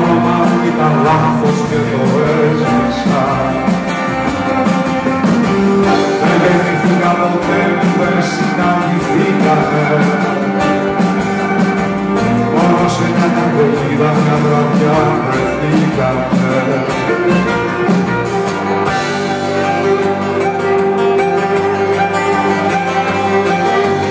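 Live music led by a strummed steel-string acoustic guitar, playing on steadily without a break.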